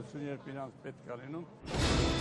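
A man speaking, quieter and trailing off; about a second and a half in, a news programme's transition sting starts suddenly and loudly, a sweep of sound leading into music.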